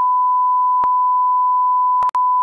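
Steady 1 kHz test tone, the single held beep that goes with TV colour bars, with one brief click a little under a second in.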